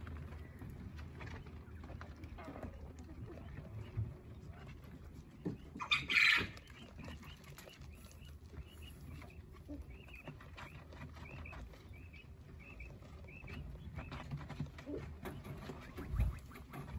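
Coturnix quail calling softly: one louder call about six seconds in, then a run of faint, high chirps in the second half, over a low steady hum.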